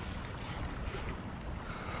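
Wind buffeting the microphone: a low, steady rumble with a faint hiss.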